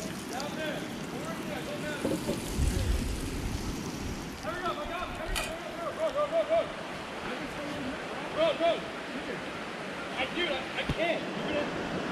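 Steady rush of a flowing river, with faint distant voices calling out now and then from about halfway through.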